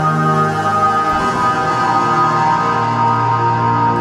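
ORBIT Kontakt synthesizer patch playing a sustained, evolving pad of held tones, shifting about a second in. Its low-pass filter cutoff is being turned down, dulling the top end.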